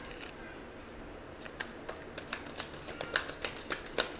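A deck of tarot cards being shuffled by hand: a quick run of sharp card snaps and slaps, about five a second, starting about a second and a half in.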